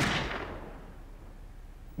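A gunshot: its sharp report, loudest right at the start, fades away in a long echo over about the first second, leaving faint hiss.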